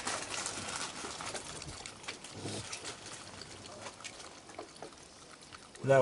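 A young raccoon drinking and dabbling in water in a plastic bucket: soft wet lapping and sloshing with small clicks, louder in the first second and fading away towards the end.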